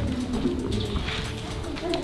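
Music with doves cooing over it, and a steady low hum underneath.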